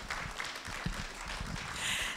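Audience applauding: many hands clapping at once, as a steady patter of claps.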